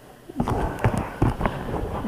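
Handling noise: a handful of sharp clicks and knocks, several per second, as a plastic Beyblade is handled close to the camera over a wooden surface.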